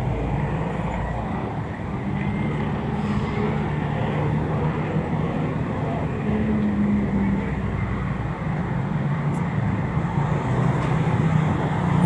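Street traffic: a steady, low hum of bus and car engines with road noise as vehicles crawl past in slow traffic.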